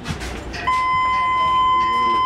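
Walk-through security metal detector sounding its alarm: one steady, high electronic beep starting under a second in and held for about a second and a half. It is set off by the bullet lodged in the man's chest as he passes through.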